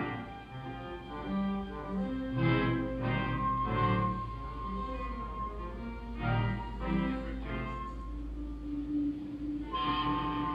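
Orchestral soundtrack music with bowed strings playing a slow series of held notes, with one long high note about four seconds in and a long low note held near the end.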